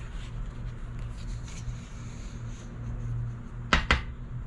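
Two quick knocks close together near the end, a knock for good luck before scratching the next lottery ticket, over a faint steady hum.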